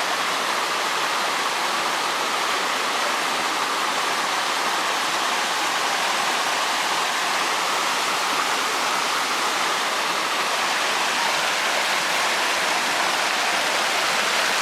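Fast-flowing stream rushing over rocks below a small waterfall, a steady, unbroken rush of water.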